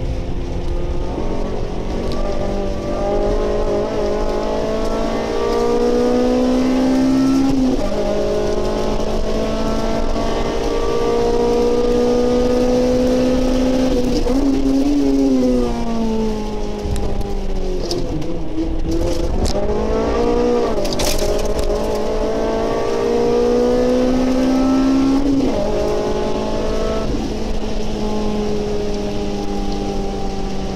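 Honda Civic Type R FN2's four-cylinder engine heard from inside the car, pulling steadily up through the revs with a drop at a gear change about eight seconds in, falling off through the middle, then climbing again to another shift near the end. Under it runs a steady rush of rain and wet road noise.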